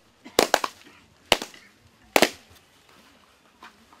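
Sharp hand claps in a Fijian kava (yaqona) ceremony: a quick run of three claps, a single clap about a second in, and a close double clap just after two seconds.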